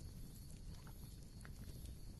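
Faint low background rumble with a few scattered, soft clicks.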